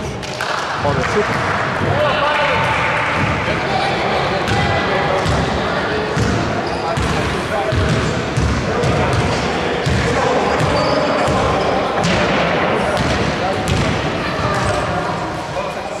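Basketball being dribbled on a hardwood gym floor during play, the bounces echoing in the hall, with players' voices calling out over it.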